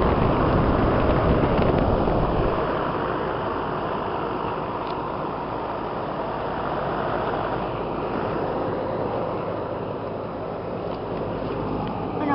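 A 1962 Carrier 'Round One' central air conditioner's outdoor condensing unit running, with a steady rush of air from its condenser fan. It is loudest in the first couple of seconds, with the fan's air blowing on the microphone.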